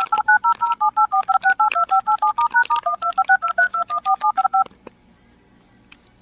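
Smartphone dial-pad touch-tones (DTMF): keys pressed in quick succession, about six two-note beeps a second, each a different digit. The run stops abruptly about three-quarters of the way through.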